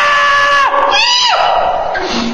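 Several voices holding one long loud note together, cut off with a falling bend under a second in, then a short cry that rises and falls.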